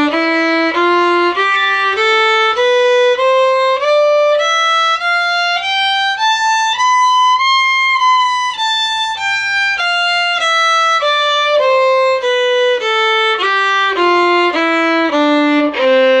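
Solo fiddle bowing a two-octave C major scale, single notes about two a second, climbing from low C to high C, which it holds once, a little longer, about halfway through, then stepping straight back down.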